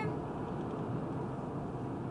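Steady road and engine noise of a car driving at speed, heard inside the cabin.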